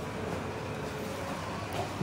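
Steady, even background noise with no distinct sound events.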